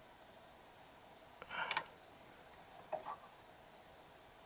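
Mostly quiet, with two short scraping clicks of plastic: one about a second and a half in and a smaller one near three seconds. They come as a SATA power connector is wiggled loose from a desktop hard drive.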